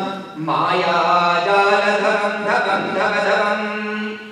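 Voices chanting a Hindu devotional mantra in long, sustained phrases, with a short break about half a second in.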